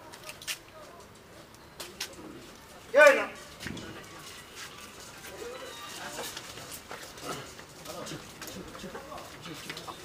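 A man's loud, drawn-out call about three seconds in, with a few sharp clicks before it and a low murmur of voices through the second half.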